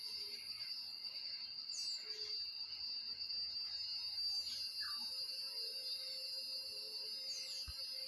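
Steady high-pitched insect drone, with a few short downward-gliding bird chirps.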